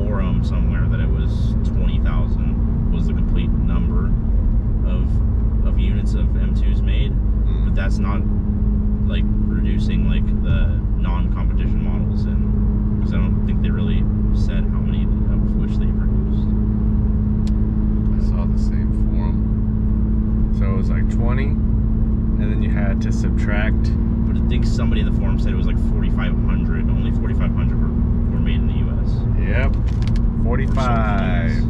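Inside the cabin of a BMW M2 Competition cruising at a steady speed: a constant low drone from its twin-turbo straight-six and road noise, under people talking.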